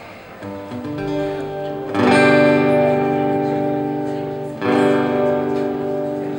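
Acoustic guitar playing the opening chords of a song: softer chords at first, then a loud strum about two seconds in and another near five seconds, each left to ring.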